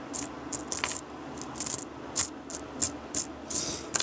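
Pennies clinking against one another as they are pushed around and sorted by hand on a cloth: a dozen or so sharp, irregular clicks of coin on coin.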